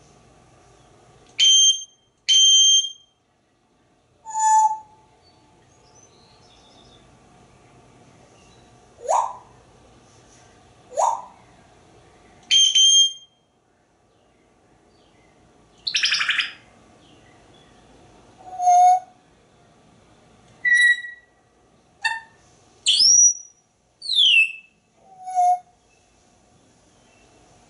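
African grey parrot whistling and chirping: about a dozen short separate calls with gaps between them, mostly clear whistles, some sliding upward and one sliding down, with one harsher, noisier squawk around the middle.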